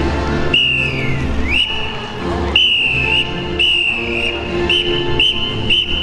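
Whistle blasts: a long first blast that falls in pitch and climbs back, then a series of shorter blasts coming quicker toward the end, over music playing in the background.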